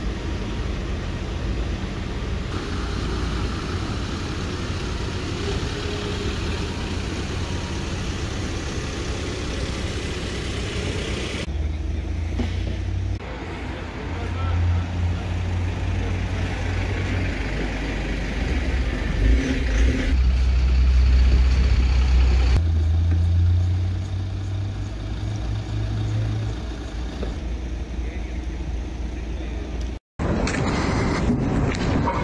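Engines of parked fire engines and emergency vehicles idling: a steady low rumble that grows louder about two-thirds of the way through.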